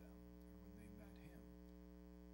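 Near silence apart from a steady electrical mains hum on the recording.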